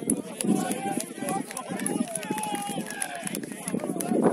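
Several voices shouting and calling out over each other during rugby play, indistinct and unbroken.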